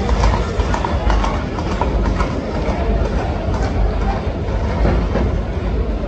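Horses' hooves clattering on an asphalt street as a group of riders gallops past with a bull running among them, with crowd voices around.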